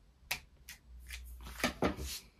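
Hands handling paper craft pieces on a work surface: about five short taps and rustles.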